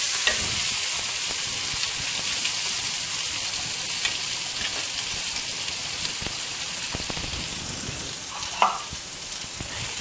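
Chopped small onions sizzling as they hit hot oil in a clay pot, the sizzle loudest as they go in and slowly dying down. A few light knocks sound over it.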